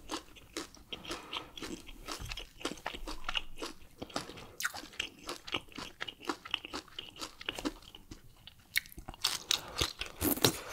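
A person chewing a mouthful of food close to the microphone, with quick, irregular mouth clicks and smacks, several a second.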